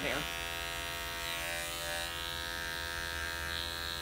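Andis five-speed electric dog clipper with a #40 blade running at a steady buzz while it trims the hair inside a dog's ear flap.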